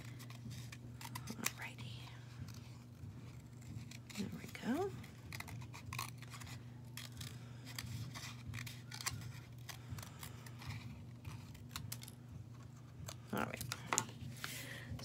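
Small scissors snipping through a thin orange craft sheet, a string of short, irregular snips and clicks as a little shape is cut out.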